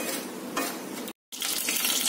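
Steady scratchy hiss of dry semolina being stirred with a spoon as it roasts in a pan on low heat. The sound cuts out completely for a moment just over a second in, then carries on a little louder.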